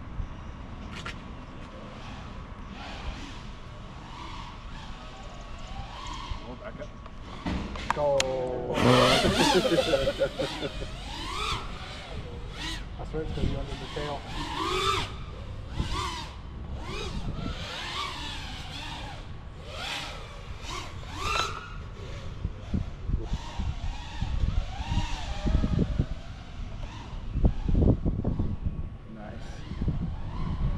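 FPV freestyle quadcopter's brushless motors whining, the pitch sweeping up and down with the throttle. From about eight seconds in the whine is louder and its pitch changes quickly as the quad is thrown around.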